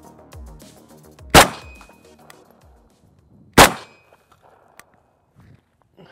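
Background music with a beat fading out, then two loud rifle shots from a VZ-58 about two seconds apart, each with a short echo.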